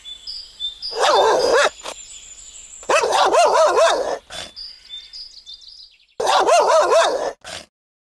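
Belgian Malinois vocalizing in three loud bursts of about a second each, high and rapidly wavering in pitch, a mix of barking and whining from a dog worked up during bite work on a padded suit.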